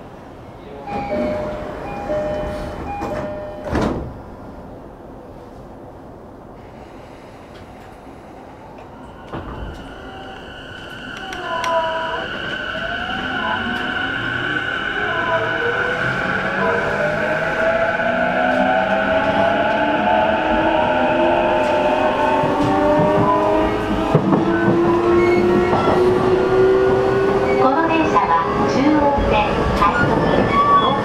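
Inside an E233-series electric motor car: a short two-tone chime and a thump in the first four seconds as the doors close. After a quiet spell, the VVVF inverter traction motors whine in several rising tones as the train pulls away and accelerates, with wheel and rail noise building steadily.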